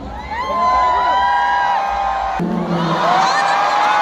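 Concert crowd cheering, with many long, high held screams and whoops. The sound cuts abruptly a little past halfway to another stretch of the same cheering.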